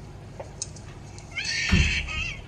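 A girl screaming in a high-pitched cry, played from a film through laptop speakers, starting about one and a half seconds in. A low thump sounds partway through the scream.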